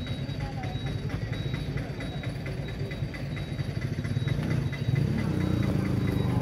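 Motorcycle engine running with a steady low pulsing, growing louder about five seconds in.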